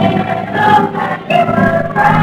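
A group of voices singing a song together, accompanied by acoustic guitars.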